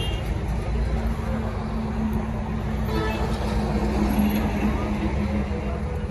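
Steady low rumble of a running vehicle engine with a constant hum, unbroken throughout, with faint voices mixed in.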